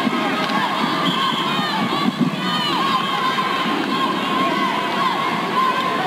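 Arena crowd of spectators shouting and cheering steadily, many voices calling out over one another.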